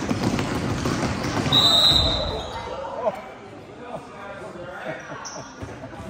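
Basketball bouncing on a gym floor amid spectators' and players' voices, with a referee's whistle blown once, briefly, about a second and a half in; the sound grows quieter after about three seconds.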